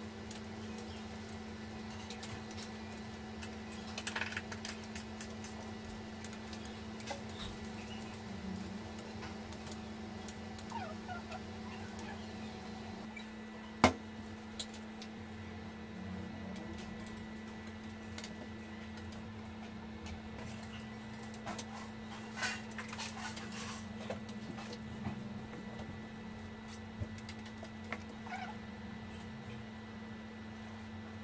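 A steady low hum with occasional light taps and clicks from fondant pieces and a cutting tool being handled on a countertop. One sharp knock about 14 seconds in is the loudest sound.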